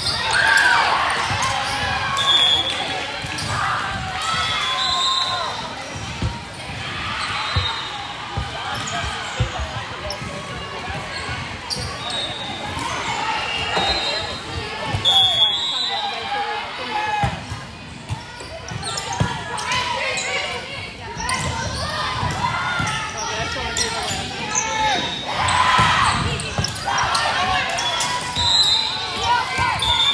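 Volleyball rally in a large gym: players and spectators calling and shouting over each other, with the ball being struck and bouncing on the hardwood court. There are a few short, high squeaks, typical of sneakers on the floor.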